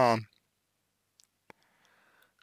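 A man's voice trailing off at the start, then near silence broken by a single sharp click about a second and a half in, with a fainter tick just before it.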